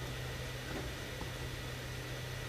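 Steady low hum with an even hiss of background noise, with no distinct sounds standing out.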